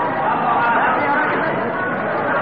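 Several voices overlapping in a large hall: audience murmuring and calling out around a Quran reciter's chanting, in an old, narrow-sounding live recording.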